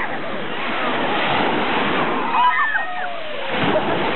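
Small waves breaking and washing up a pebble beach in a steady rush of surf, with a wave splashing up close near the end.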